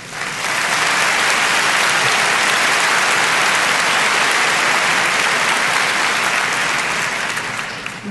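Large audience applauding steadily, building up in the first half second and tapering off near the end, after a nominee's name is read out.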